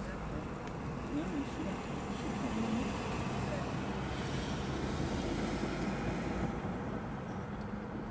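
Road traffic noise: a steady hiss of cars on a nearby road, swelling as a vehicle passes in the middle.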